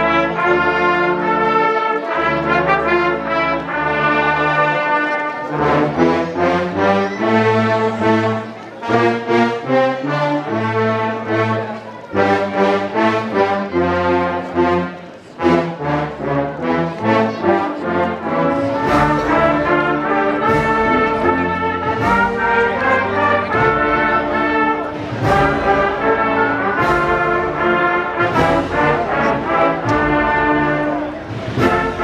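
Agrupación musical (a procession band of trumpets, trombones and drums) playing a slow processional piece in sustained brass chords. Regular percussion strikes join in during the last third.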